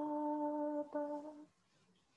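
A woman's voice chanting one long, steady held note, with a brief catch about a second in, stopping about a second and a half in.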